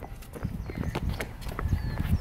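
Footsteps of sneakers on a concrete skatepark ramp: a run of short, irregular dull thuds as a person walks up to the ramp and scrambles up its wall.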